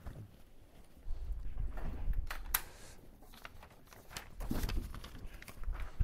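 Footsteps on a hard floor and the handling of paper sheets: scattered knocks and clicks over a low rumble, with the sharpest click about halfway through.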